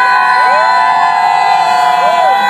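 Party crowd cheering and screaming, many voices holding long, overlapping whoops.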